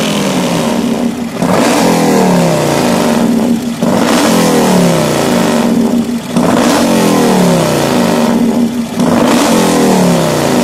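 Motorcycle engine on a sidecar outfit being blipped, each rise in revs followed by the revs falling back. It happens four times, about every two and a half seconds.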